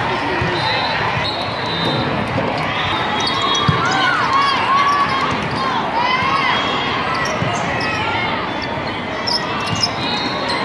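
Busy volleyball tournament hall: sneakers squeaking on the sport court, volleyballs being struck, with the sharpest hit about four seconds in, over a steady background of many voices echoing in the large hall.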